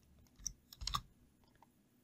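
A few faint computer-keyboard keystrokes, one about half a second in and a quick cluster near one second in, as a stray letter is deleted from a column name in code and the cell is re-run.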